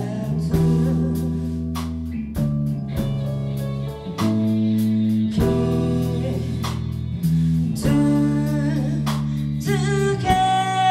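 Live band playing a slow song: electric guitars and keyboard holding sustained chords that change every second or two, with a voice singing over them.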